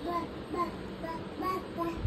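A toddler babbling in short, sing-song syllables, about five in a row.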